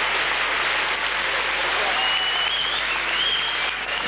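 A large theatre audience applauding steadily after a performance ends.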